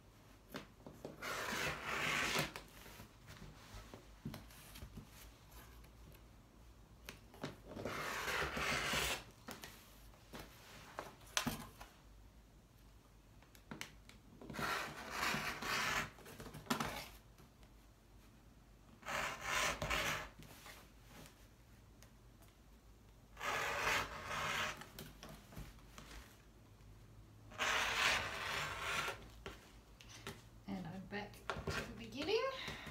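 Rotary cutter rolling along the edge of an acrylic wave ruler, slicing through the quilt's layers of top, batting and backing on a cutting mat. There are six rough, scraping cut strokes of about a second or so each, several seconds apart.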